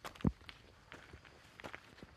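Footsteps of a hiker walking on a dirt forest trail: a few soft, uneven footfalls, the firmest one just after the start.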